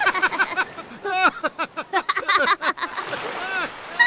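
Cartoon voices laughing in quick bursts that rise and fall in pitch, one of them high like a young child's. A wash of surf comes in during a pause near the end.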